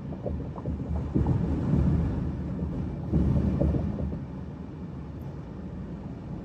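Road noise inside a car cruising on a freeway: a steady low rumble of tyres and engine. It swells louder twice in the first few seconds, then settles quieter.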